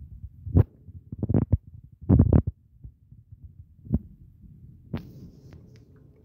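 Dull low thumps and small taps, irregularly spaced, from fingers tapping and handling a smartphone as a search is typed on its touchscreen keyboard, picked up by the phone's own microphone.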